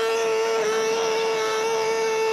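A man's voice holding one long, strained, high-pitched note at a nearly steady pitch, a comic vocal imitation in the middle of a stand-up routine.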